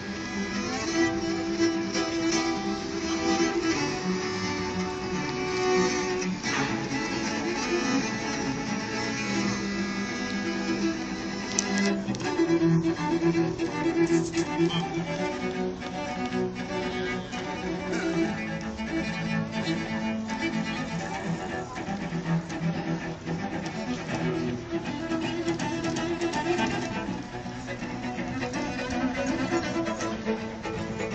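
A quartet of four cellos playing a piece together with the bow, sustained low-register lines moving under a melody.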